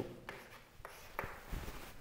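Faint chalk writing on a chalkboard: a few short scrapes and taps of chalk on the board.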